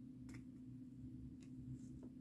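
Faint ticks of a diamond painting drill pen setting resin drills onto the canvas: two light clicks about a second apart, over a steady low hum.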